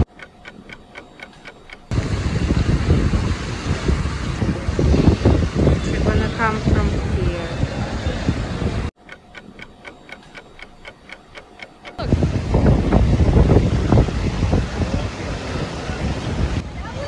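Water-park ambience: wind buffeting the microphone over running water, with distant voices. It drops away twice into quieter stretches of fast, even ticking, about six ticks a second.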